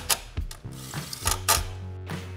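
Cordless power ratchet with a T-40 bit running down a brace bolt, in a few short bursts of mechanical clicking, over background music.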